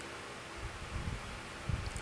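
Room tone in a pause between speech: a steady hiss with a faint hum and a few soft low thumps.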